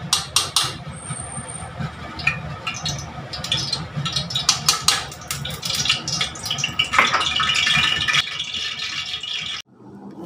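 Metal spoon scraping and clinking inside a tin of ghee, many quick clicks and scrapes. A steady hiss comes in about seven seconds in, and the sound cuts off suddenly near the end.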